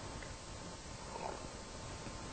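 Low rumbling room noise with a faint steady hum, no speech.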